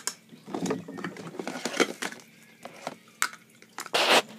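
Scattered light clicks and taps of small plastic toys being handled on a plastic tabletop.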